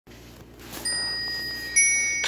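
Two electronic chime tones from a cartoon's soundtrack, heard through a TV speaker: one starts about a second in and rings on steadily, then a second, slightly higher and louder one comes in near the end.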